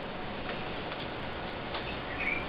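Steady hiss of a noisy room recording with a few faint ticks scattered through it.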